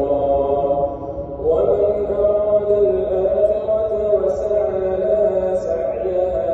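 Chanted Islamic recitation by a single voice in long, drawn-out notes. There is a short break about a second in, and then a new phrase rises and is held.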